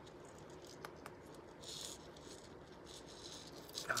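Fingernails picking and scratching at the catch of a small metal locket that won't open: a few faint clicks and a brief scratchy rustle about halfway through.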